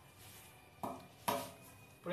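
Two light taps of a small hammer on a small nail going into a thin cedar strip, about half a second apart, each with a brief metallic ring.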